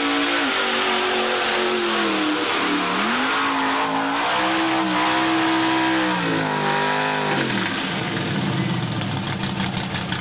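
Lifted Chevrolet pickup's engine revving hard as the truck churns through deep mud, its pitch dipping and climbing again. About seven and a half seconds in the revs fall away to a lower, rougher rumble.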